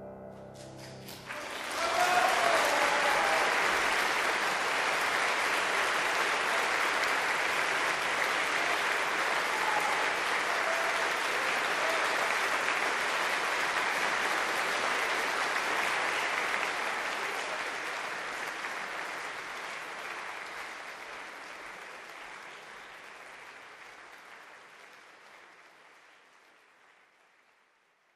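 Concert hall audience applauding a solo piano performance. The last piano notes die away in the first second, then the applause breaks out, holds steady, and fades away over the last ten seconds.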